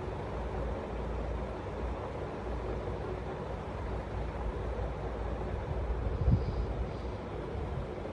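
Steady low rumbling background noise, with a single brief thump about six seconds in.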